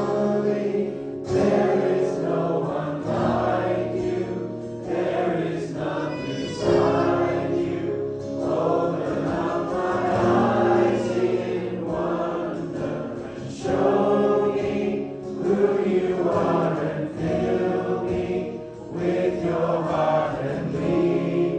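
A congregation singing a worship song together, many voices in held phrases that break every second or two.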